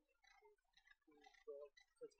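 Near silence with faint, distant speech.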